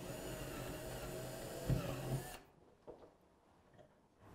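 Cordless drill running steadily as it drills a pilot hole for the door handle through masking tape into the laminate cupboard door. It stops a little over halfway through.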